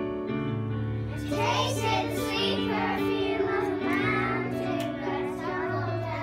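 Children singing a pop song over backing music with steady held bass and chord notes; the voices come in about a second and a half in.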